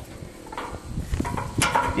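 A few light clicks and knocks of steel parts, the broom's angle-adjustment pin being handled.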